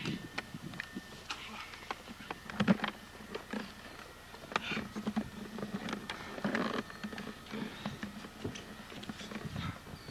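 Wrestlers scuffling and thumping on a tarp-covered wooden platform: scattered knocks and rustles, with a few heavier thuds about a third and halfway through.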